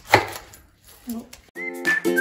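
A chef's knife cutting through a pineapple and striking a wooden cutting board, one sharp cut just after the start. About one and a half seconds in, background music begins.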